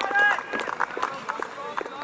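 Shouting voices on an outdoor football pitch: a short call right at the start, then faint scattered calls mixed with sharp clicks and knocks.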